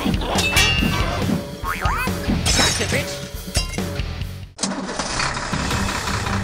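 Cartoon sound effects over background music: quick hits and clatters, with several rising slide-whistle-like glides. These cut off abruptly about four and a half seconds in. A steady, even drone with a low hum follows.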